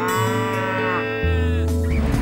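One long farm-animal call, rising and then falling in pitch, over acoustic guitar music. A low vehicle rumble comes in a little past halfway.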